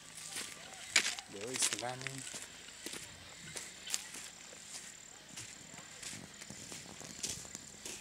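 Footsteps on grass and a dirt path, a scatter of faint, irregularly spaced soft steps, with a thin steady high-pitched tone behind them.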